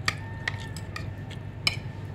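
Metal spoon and fork clinking and scraping against a ceramic plate while eating: a few sharp clinks about half a second apart, the loudest near the end, over a steady low room hum.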